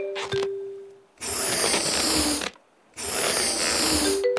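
Cartoon sound effect of inflatable armbands being blown up: two long puffs of breath, each about a second and a half, with a short pause between. A short falling run of musical notes ends in a held low note during the first second.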